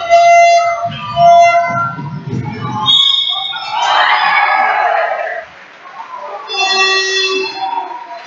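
Shouting voices and court noise of a basketball game in play in a sports hall, with a burst of louder noise about four seconds in as a basket is scored.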